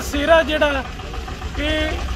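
A man speaking in short phrases over the steady low hum of an idling vehicle engine.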